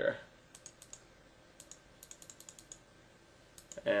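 Faint, light computer clicks: a few single clicks, then a quick run of about ten within a second.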